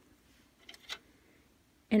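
A few faint, light clicks of tiny plastic dollhouse kitchen pieces being handled, just before the middle.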